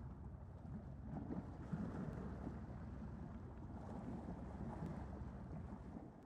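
Faint, steady wind-like rushing noise with a low hum underneath, swelling gently now and then.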